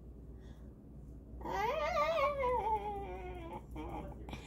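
A girl's voice holding one long wordless, wavering note for about two seconds, starting about a second and a half in, rising at first and then slowly falling in pitch.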